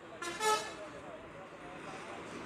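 A vehicle horn toots once, briefly, about a quarter of a second in, over street traffic and the murmur of voices.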